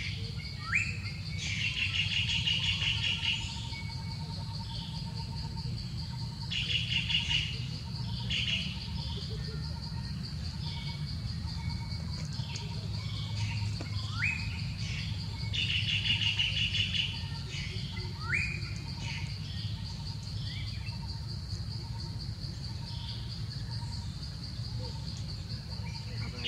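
Wild birds singing outdoors: a rapid trilled phrase comes back every few seconds, with short rising whistled calls in between. A steady, high-pitched insect drone and a low background rumble run underneath.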